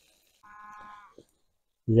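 A single faint animal call, one steady-pitched note lasting about half a second, followed by a small click.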